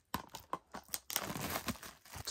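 Shrink-wrapped plastic Blu-ray case crinkling as its cardboard slipcover is slid off: a run of sharp crackles, then denser crinkling in the second half.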